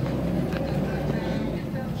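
A fishing boat's engine running steadily at low speed, a constant low hum, with the wash of water and wind noise over it.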